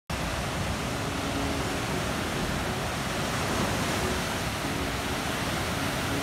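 Ocean surf breaking on a rock breakwater and sandy beach: a steady, unbroken rush of white water with no distinct wave crashes standing out.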